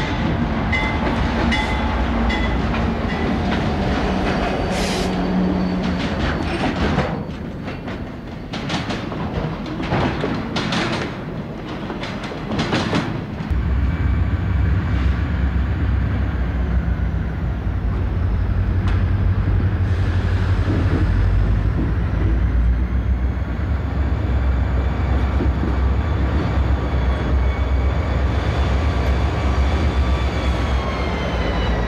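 Diesel freight locomotives at work. At first a Santa Fe locomotive rolls past with its engine running and its wheels clicking over the rail joints. After a sudden cut about 13 seconds in, a louder, deeper diesel rumble takes over as a Southern Pacific locomotive pulls its train out, exhaust smoking, with a faint whine rising and falling.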